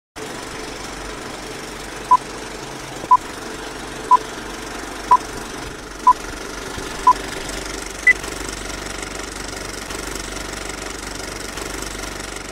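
A countdown of short electronic beeps one second apart: six identical beeps, then a seventh higher in pitch, over a steady hiss and hum.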